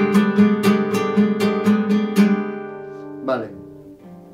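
Flamenco guitar with a capo, played por arriba in E: a bulería compás of sharp strummed strokes, about four a second, closing the phrase with a remate. The last chord rings and fades, and there is a brief sound near the end.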